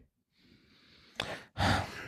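About a second of silence, then a short click and a person's audible intake of breath before speaking.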